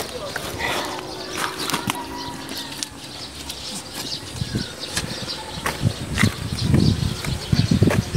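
Scuffing, scraping and rustling of clothes as someone clambers over a concrete block wall, with scattered knocks and clicks and some low rumbling bumps of handling noise near the end.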